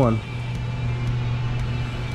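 The tail of a spoken word, then a steady low hum with a background hiss that holds level without change.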